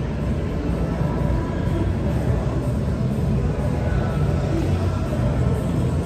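Shopping-mall ambience: faint background music over a steady low rumble of the open hall.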